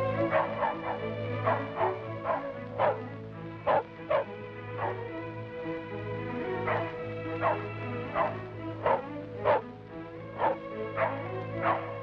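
A small terrier barking repeatedly in short, sharp yaps at an uneven pace, about eighteen barks, over background music with long held tones.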